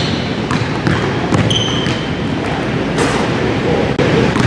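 A basketball dribbled on a hardwood gym floor, with irregular bounces and short sneaker squeaks over a steady gym background.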